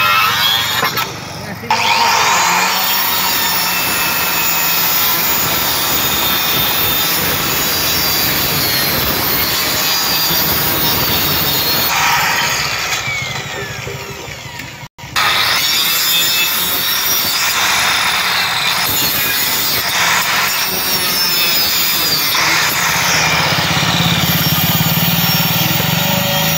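Handheld electric cutter with a circular blade running and cutting through green bamboo. It dips briefly about a second in, and winds down with a falling pitch just before the middle. The sound breaks off abruptly, then comes back at full level for the rest.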